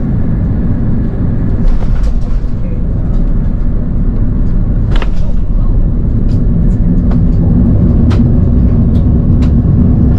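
Airbus A330-900neo cabin noise while taxiing: a steady low rumble of the engines and rolling landing gear, with a low hum growing a little stronger about halfway through. Short sharp knocks come now and then, more of them in the second half, as the wheels roll over the pavement.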